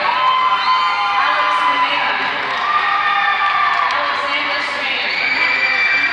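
Large crowd cheering and shouting, many voices overlapping, with held calls and whoops rising out of it.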